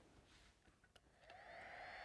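Battery-powered serrated hot knife running while cutting canvas: a faint whine that starts a little past a second in, rises briefly and then holds steady, after near silence.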